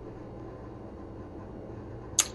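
Steady low background hum of a room, with no distinct sound event.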